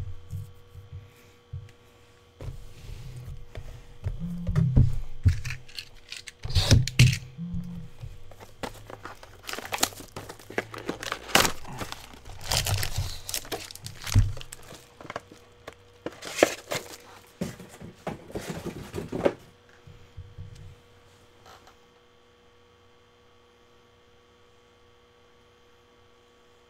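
Plastic shrink-wrap being torn and crinkled, with cardboard boxes handled with thuds, as a sealed case of trading-card boxes is opened. It comes in irregular crackly spells that stop a few seconds before the end, leaving a faint steady electrical hum.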